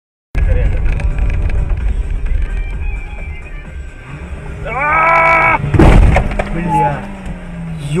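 Dashcam audio inside a car on a rough dirt lane: a low rumble of the car, then a long drawn-out shout about five seconds in, a sharp knock just after it, and more shouting near the end.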